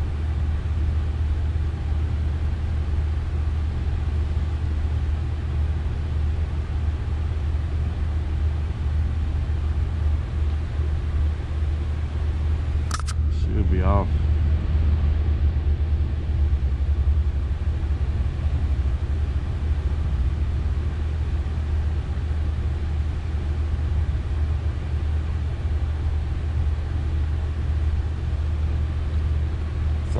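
Steady low hum of an HVAC unit running close by, unbroken throughout. A short bit of voice comes in about thirteen seconds in.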